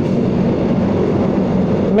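Motor scooter running steadily at about 50 km/h, a low engine hum under an even rush of road and wind noise.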